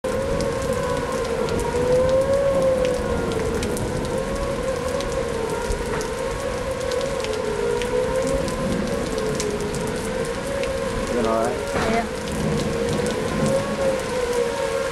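Outdoor civil-defence warning siren sounding a steady wail for a tornado warning, its pitch wavering gently up and down, with rain falling.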